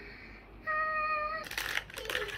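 A single high, steady voice-like note lasting under a second, then the crinkling rustle of a plastic bag of toy parts being handled.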